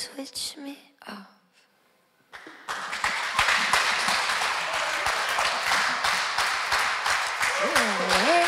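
The last notes of a live band's song die away, then after a brief silence a small audience applauds and claps from about three seconds in, with a voice cheering with a sliding pitch near the end.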